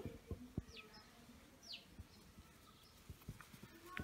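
Near silence, with a bird giving two faint, short downward-sliding chirps about half a second and a second and a half in, and a few soft clicks from hands handling a doll's belt buckle.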